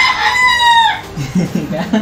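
A rooster crowing: one long, high call that drops in pitch at its end, about a second into the clip, followed by brief voices.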